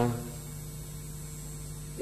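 Steady low electrical hum on the microphone and broadcast sound feed, with a faint high tone above it.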